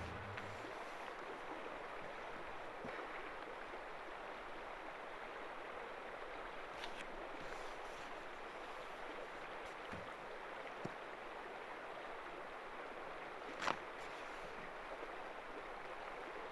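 Steady, low outdoor background hiss with no clear source, broken by a few faint ticks and one sharper click about fourteen seconds in.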